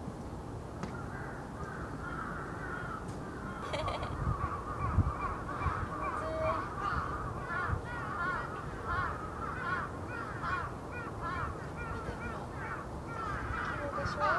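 A flock of birds calling, many short calls overlapping in quick succession, growing busier from about four seconds in, over a low steady outdoor rumble.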